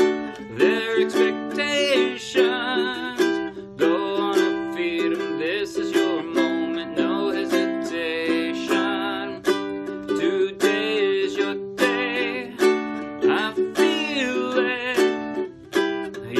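Ukulele strummed in a steady rhythm, with a man singing along.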